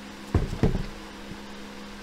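A colouring book being handled and laid open on a table: two dull thumps just after a third of a second in, a quarter second apart, then a faint knock. A steady low hum runs underneath.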